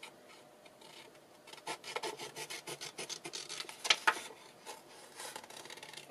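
Paper handling: a sheet of printed paper labels rustling and rubbing as it is moved and slid across a cutting mat, in irregular crackles with one sharper crinkle about four seconds in.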